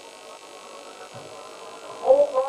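Steady electrical mains hum with faint hiss, heard in a pause between sung lines of a chant.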